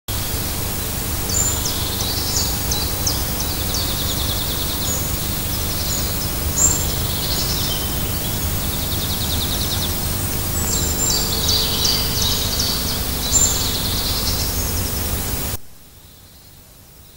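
Birds singing, with repeated short high chirps and trills, over a loud steady rushing hiss. The whole sound cuts off suddenly just before the end.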